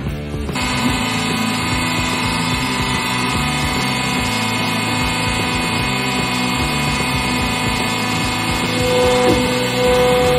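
100-ton hydraulic press running, its pump making a steady hum of many fixed tones while the ram descends. About nine seconds in, a stronger higher tone joins and it gets louder as the ram reaches the stainless steel pot.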